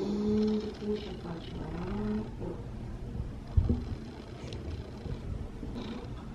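A woman's muffled, whimpering moan through the hand over her mouth, held on one pitch for about two seconds: a nervous reaction to the needle during a blood draw. A brief low bump follows about three and a half seconds in.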